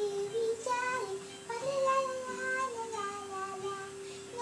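A child singing a wordless, gliding melody over a steady held tone.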